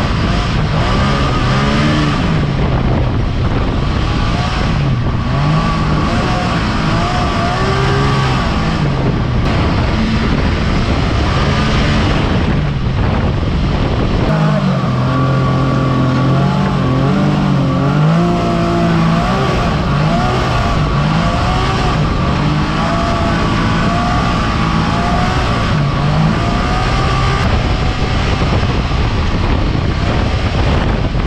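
Side-by-side UTV's engine running under throttle on a dirt trail, its pitch rising and falling as the driver gets on and off the gas, over loud rushing wind and road noise. A steady high whine sits on top for long stretches.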